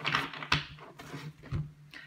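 A deck of tarot cards being handled and shuffled: soft rustling with a few sharp clicks and taps, the loudest about half a second in.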